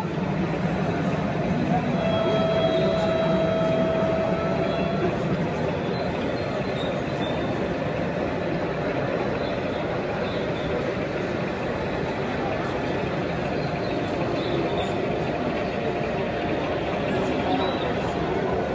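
Steady crowd babble in a large hall, with a model diesel locomotive running on the layout. A steady whining tone with higher overtones holds for about three seconds, starting about two seconds in.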